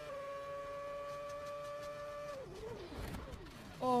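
Onboard sound of a 2011 Formula 1 car's V8 engine held at a steady high-pitched whine at full throttle through the tunnel. About two seconds in, the note drops and wavers as the car loses speed, and a few short knocks follow near the end.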